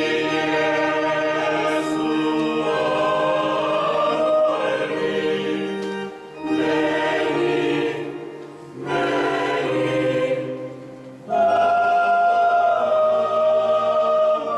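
Choir singing the chant of a sung Mass in long phrases, with short pauses about six, eight and a half and eleven seconds in. It is most likely the Introit, which is sung while the priest says the prayers at the foot of the altar.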